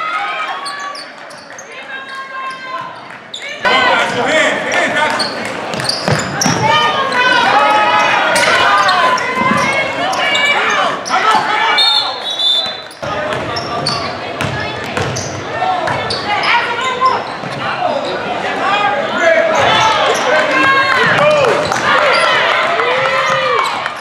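Basketball game in a gym: a ball bouncing on the hardwood court amid many overlapping shouts and calls from players and spectators, echoing in the large hall.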